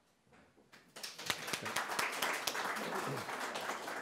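Audience applauding, starting about a second in after a brief hush.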